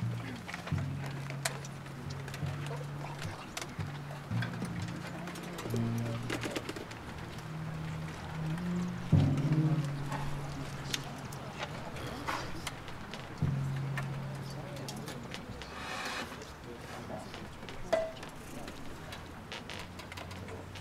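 Quiet, scattered held low notes from a concert band's low instruments, stepping between a few pitches rather than playing a full piece, with occasional faint clicks.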